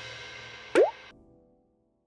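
The last of a children's song's music fading away, then a single short rising 'bloop' about three-quarters of a second in: a cartoon bubble-pop sound effect.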